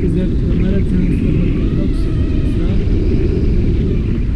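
Wind rushing over the camera microphone in flight, a loud, steady low rumble, with voices faintly audible under it.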